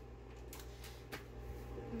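Quiet kitchen room tone with a steady low hum, and a couple of faint light knocks as a large plastic mixing bowl of pretzels is handled and lifted.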